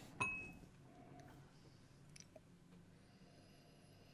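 A whisky tasting glass clinks once just after the start, a light knock with a brief high ring, as it is set down or tapped. Then quiet room tone with a few faint ticks.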